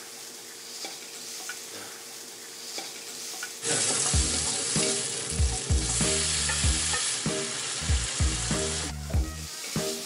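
Garlic, green onion and meat frying in oil in a wok, stirred with chopsticks. After a few seconds of quieter kitchen noise with a faint steady hum, a loud sizzle starts about a third of the way in, broken by repeated knocks and scrapes of the stirring, and eases off near the end.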